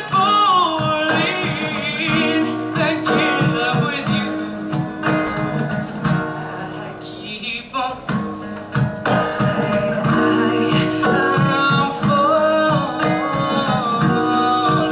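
A man singing a song to his own strummed acoustic guitar, his voice carried through a microphone. The guitar keeps an even strumming rhythm under a melody with held, wavering notes, with a brief softer passage about halfway through.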